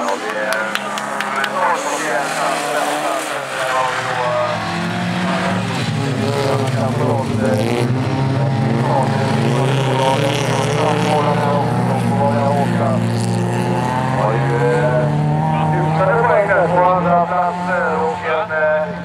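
Several folkrace cars' engines revving hard as they race on a dirt track, pitches rising and falling with throttle and gear changes. The sound grows louder from about four seconds in.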